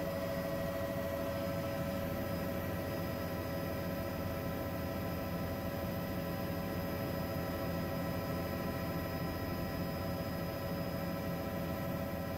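Helicopter in steady flight heard from inside the cabin: an even engine and airframe noise with a constant whine made of several steady tones.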